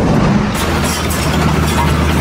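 A heavy engine running with a low, steady rumble under dense crackling noise, in war-zone field audio.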